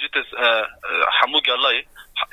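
Speech that sounds thin and narrow, as if heard over a telephone line.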